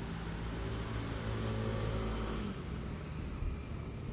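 A low, steady engine-like hum over a constant background rush; the hum's pitched part cuts out about two and a half seconds in, leaving the rush.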